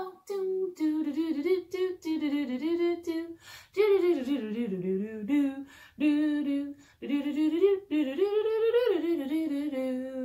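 A woman humming a wordless tune in short phrases, imitating a piano part, ending on a held note.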